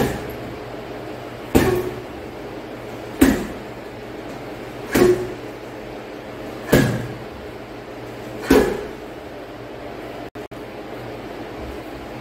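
A leather heavy punching bag taking kicks: six solid thuds at an even pace, about one every second and a half to two seconds, each dying away quickly.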